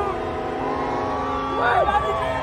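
A crowd of people shouting and whooping, with some calls held long, over the low rumble of police motorcycles rolling past. A louder shout comes near the end.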